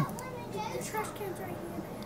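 A faint voice talking in the background, quieter than the nearby narrator, with light handling of a plastic-cased trading card.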